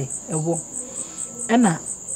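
Crickets chirping: a steady high trill that pulses evenly about four times a second.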